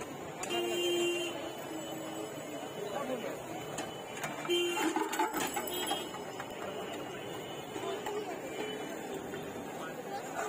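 Busy street-stall din of nearby voices, with steel ladles and utensils clattering against steel pots about halfway through.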